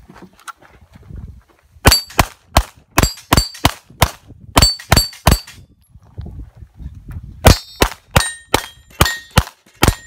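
Pistol shots fired in two rapid strings of about ten shots each, a couple of seconds apart. Several shots are followed by the ringing of struck steel targets.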